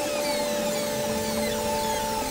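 Ambient electronic synthesizer music: held sustained notes over a hissing noise texture, with many repeated falling sweeps.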